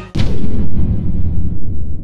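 A single sudden boom-like impact sound effect about a tenth of a second in. It is followed by a long low rumble whose upper part dies away within about a second and a half.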